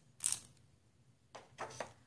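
Plastic decorative-edge craft border scissors snipping at paper: a short snip about a quarter second in and two more about one and a half seconds in. The blades are catching rather than cutting cleanly, which the user later puts down to opening them too wide.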